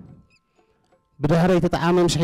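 A man's voice through a stage microphone, starting loud after about a second of near silence.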